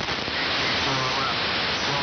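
Heavy hiss and static from a shortwave receiver tuned to an AM amateur voice signal on the 75-metre band, with a weak, garbled voice just audible under the noise. The signal is buried by poor band conditions, which the operator puts down to a solar storm.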